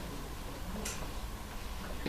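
Faint room tone in a pause between speech, with one short faint high-pitched click a little under a second in.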